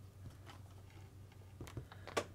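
Near silence with a low steady hum, and a couple of faint clicks near the end as small metal and plastic RC suspension parts are handled.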